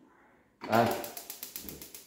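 Battery-powered spark igniter of a Paloma gas hob clicking rapidly, about ten clicks a second, while the burner's ignition button is held in.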